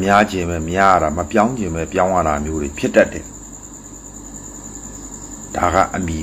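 A man speaking Burmese for about three seconds, then a pause, then a few more words near the end. Under it runs a steady high-pitched chirring like crickets, heard clearest in the pause.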